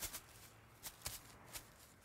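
A few faint, sharp clicks, about six of them at uneven intervals, over a quiet background.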